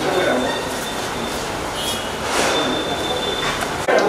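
Indistinct murmur of a crowd over steady room noise, with a thin high-pitched tone that comes and goes.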